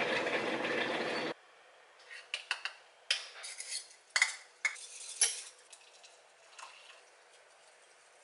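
A steady rushing noise that cuts off suddenly about a second in, then scattered clinks and taps of a glass cup and a bamboo matcha whisk being handled while matcha is made.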